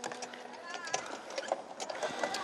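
Faint voices in the background, with scattered light clicks and knocks.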